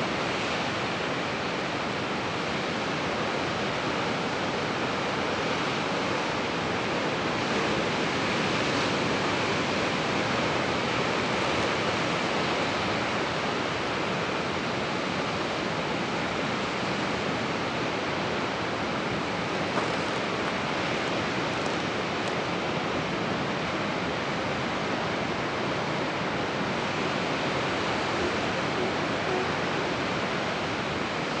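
Ocean surf: a steady, unbroken wash of noise that swells a little and falls back.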